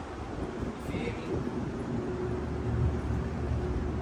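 Wind buffeting the microphone, heard as a low rumble, with a faint steady hum underneath.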